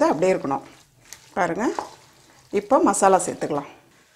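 Wooden spoon stirring a steel pot of vegetables frying in oil and masala, with a faint sizzle heard in the pauses between speech in Tamil.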